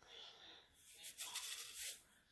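Prague powder No. 1 (pink curing salt) being sprinkled a pinch at a time onto a clear plastic tray: a faint, gritty hiss, strongest in the second half.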